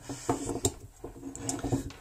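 Metal clinks and knocks as a helping-hands soldering stand with clamps is handled and moved on a wooden tabletop, several short sharp clicks, one clearest a little past halfway.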